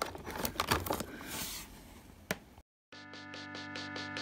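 Crinkling of a clear plastic blister tray and small clicks of twist-tie wire being untangled, then a brief dropout and background music with sustained chords and a quick ticking beat coming in about three seconds in.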